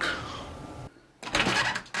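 A sudden sound that fades away over about a second, then a burst of quick metallic rattling clicks near the end.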